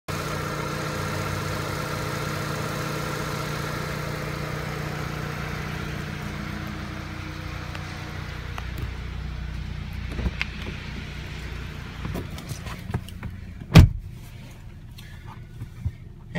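2015 Audi S3's turbocharged 2.0-litre four-cylinder idling steadily, heard from outside at the front of the car, fading during the second half. Near the end comes a single loud thump, a car door shutting, and then quieter cabin sound.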